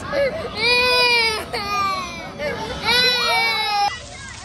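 A toddler crying in three long, high wails, each about a second long, which cut off suddenly near the end.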